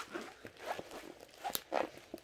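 Faint rustling and soft taps from handling a diamond painting canvas, with one sharp click about one and a half seconds in.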